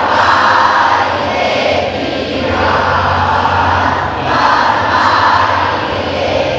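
A large group of schoolchildren singing together in unison, swelling and easing in phrases about two seconds long.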